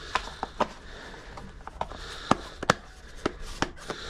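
Plastic bait box being handled and its lid pressed on: a string of sharp clicks and taps over a light rustle, the sharpest two a little past the middle.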